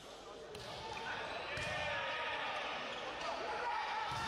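A volleyball being struck in a rally in a large indoor hall: sharp smacks of the ball about half a second and a second and a half in, over players' voices and hall noise.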